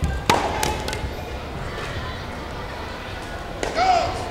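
Padded sports-chanbara swords smacking in a quick exchange of four or five hits within the first second, the loudest about a third of a second in, then a short shout near the end.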